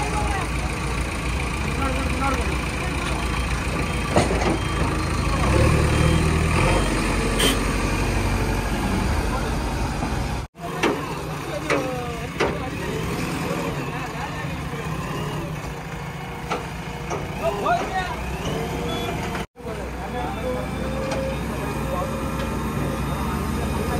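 Heavy diesel engines running at the roadside, louder for a few seconds about six seconds in, with people talking over them. The sound drops out briefly twice.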